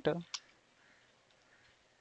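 A single sharp computer keyboard key click about a third of a second in: the Enter key pressed to run make.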